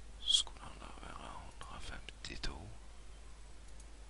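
A man whispering and muttering quietly to himself, too low for the words to come through. There is a sharp hiss about a third of a second in, and a few faint clicks come around two seconds in.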